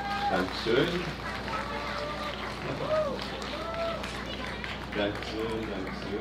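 People's voices with no guitar playing: a high voice makes a few drawn-out calls that rise and fall in pitch, and there is short talk near the end, over a steady low hum.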